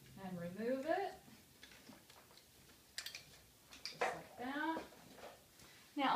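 Harness straps and hardware of a Clek Foonf car seat being worked loose by hand: a few sharp clicks a little after the middle. Two short bursts of a woman's voice, one near the start and one around two-thirds of the way through, are the loudest sounds.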